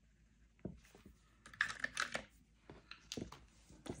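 Faint tabletop handling sounds: a felt-tip marker colouring on a paper page, with a short scratchy stretch in the middle and scattered small clicks and taps.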